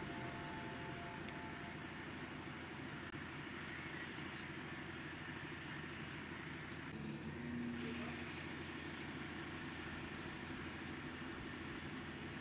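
Mobile crane's engine running steadily as it lifts a heavy load, with a slight swell about seven seconds in.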